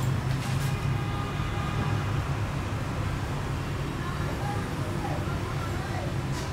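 Steady low background rumble with no clear source, with a brief rustle near the start as a sheet of paper is handled.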